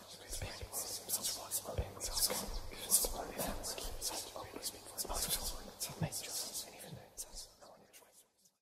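Eerie whispering, a string of short hissing whispered syllables with no clear words.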